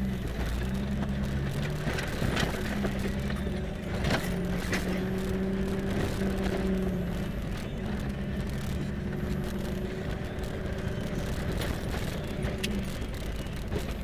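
Engine of a 4x4 running at low revs, heard from inside the cab while driving a rough dirt track, its note stepping up and down. Sharp knocks and rattles come through as the vehicle goes over bumps.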